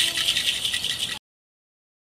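A hand-held rattle shaken quickly in a dense, continuous shake. It cuts off abruptly a little over a second in.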